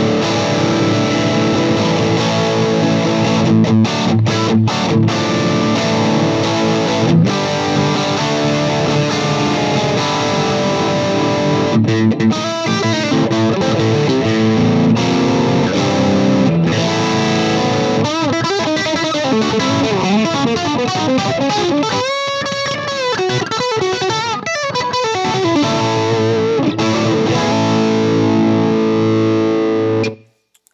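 Gibson Custom Shop SG Custom electric guitar played through an amplifier on its middle pickup position, a continuous run of lead phrases and chords. In the second half notes bend up and down, and the playing stops at the end.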